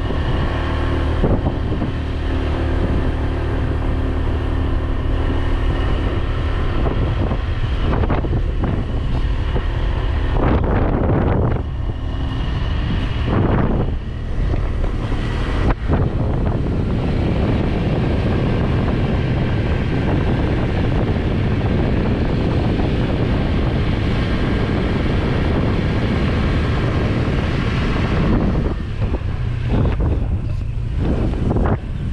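Motor scooter engine running steadily on the move, with wind buffeting the microphone.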